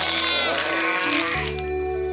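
Cartoon hatchling sharptooth dinosaurs squealing with wavering, bleat-like cries over background music. About a second and a half in, the cries stop and the music settles into a held chord.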